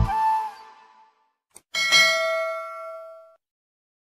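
The song's last sung note and backing fade away in the first second, then after a brief silence a single bright bell-like ding rings out and dies away over about a second and a half: the notification-bell chime of a subscribe-button outro.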